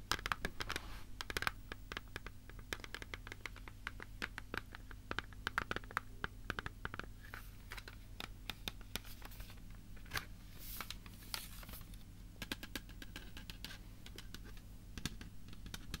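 Fingernails tapping and scratching on a hard object close to the microphone: a dense, uneven run of quick clicks with short scrapes.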